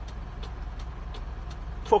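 A vehicle engine running with a steady low rumble, with a few faint ticks.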